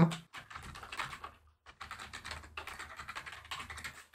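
Typing on a computer keyboard: a quick run of keystrokes, a short pause about a second and a half in, then a second run of typing.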